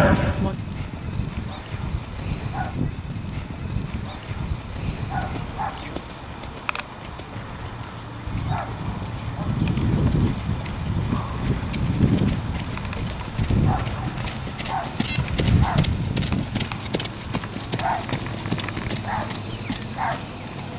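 Horse's hoofbeats on a gravel lane as it is led in hand, a series of irregular thuds and small clicks.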